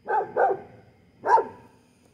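A dog barking three times: two quick barks, then a third about a second later.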